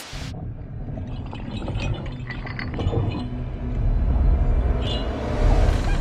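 Film soundtrack music carried by a deep low rumble that swells gradually in loudness.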